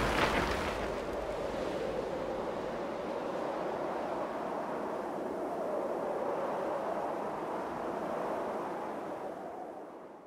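Steady wind-like rushing noise with no tune in it, the tail of a logo sound effect. It fades out near the end.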